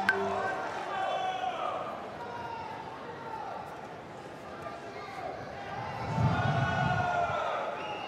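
Raised voices calling out in the arena, pitched and drawn out and stronger near the end, with a sharp knock right at the start.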